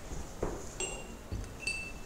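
Two short, high, bell-like chimes a little under a second apart, after a soft knock.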